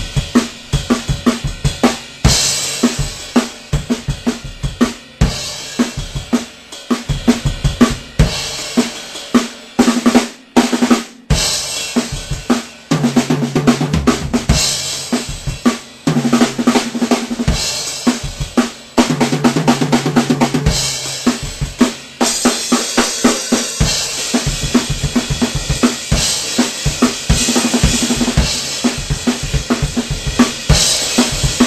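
Acoustic rock drum kit played hard and continuously: kick, snare and cymbals, with crash accents and two fast runs around the toms in the middle.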